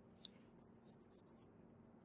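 Faint short scratches and light ticks from a computer mouse being clicked and slid across a desk.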